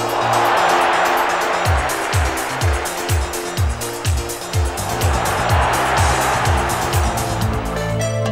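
Electronic background music with a deep bass drum that drops in pitch on each beat, about twice a second. Over it, a loud rushing noise swells and fades twice.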